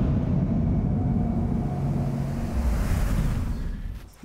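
Intro-logo sound effect: a deep, fiery rumble with a held low drone tone under it, fading out near the end.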